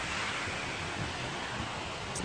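Steady wind noise on the microphone, an even hiss with low rumble.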